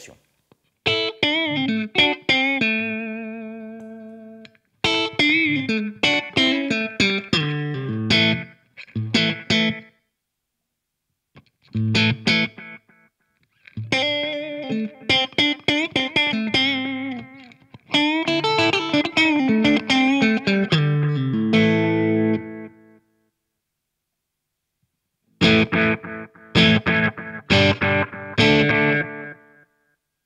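Electric guitar played through an MXR Carbon Copy Bright analog delay with its modulation turned fully up. Short phrases of notes are each followed by decaying repeats that waver in pitch, with two pauses between phrases.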